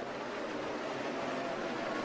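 NASCAR Cup Series stock cars' V8 engines running at speed, heard as a steady, even drone with a faint held engine note.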